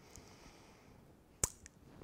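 Quiet room tone broken by one short, sharp click about a second and a half in, followed by a fainter click.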